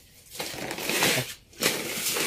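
Dry rice being poured from a plastic bag into a container: a rushing hiss of grains with crinkling plastic, in two spells with a brief break about one and a half seconds in.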